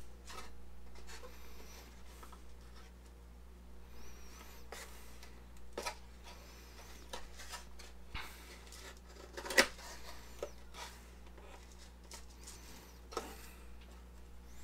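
Hobby knife blade cutting and scraping through glued balsa sheeting along a wing rib: faint scratchy strokes with scattered light clicks, the sharpest about nine and a half seconds in.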